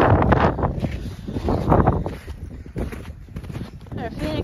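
Horses walking over snowy ground close by, their hooves making irregular noisy bursts, with wind rumbling on the microphone.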